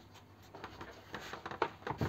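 Faint scratching and small plastic clicks as fingers work a mist generator's plug into its socket in a plastic terrarium lid.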